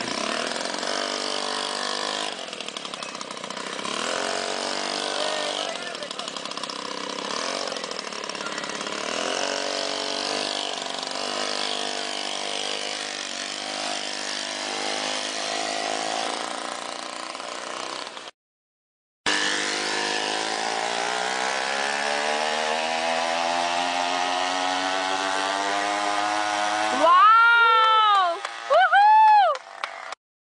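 A monowheel's engine running, its pitch wandering at first, then climbing steadily over several seconds as it speeds up after a brief dropout. Near the end come two quick, loud revs that rise and fall, the loudest sounds.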